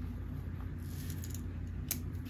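Faint scratch of a gel pen tip drawing a wavy line on lined notebook paper, with one sharp click just before the end.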